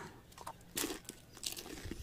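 Faint crunching of a crisp fried rolled taco being bitten and chewed, in a few short bursts.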